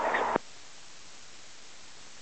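An air-band radio voice transmission cuts off abruptly in the first half second, leaving steady radio static hiss on the tower frequency.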